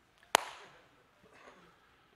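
A single sharp crack, like a slap or knock, about a third of a second in, with a short decaying tail; otherwise faint room sound.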